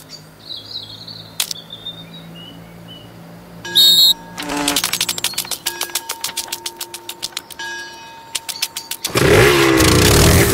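Cartoon engine-like sound effects for insect racers at a starting line: a sharp burst, then a sputtering run of rapid clicks, building to a loud, steady revving roar about nine seconds in.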